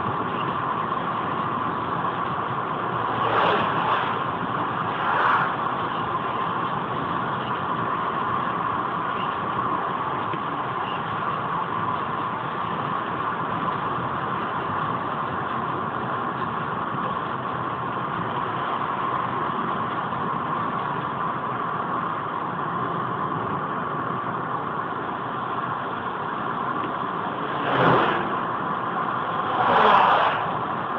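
Steady engine and tyre noise heard inside a car cruising at about 80–90 km/h on a wet highway. A few brief louder swishes come, two early and two near the end.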